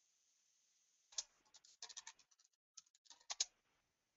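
Faint computer keyboard typing: scattered short clicks in two clusters, one starting about a second in and the other near the end, with near silence between them.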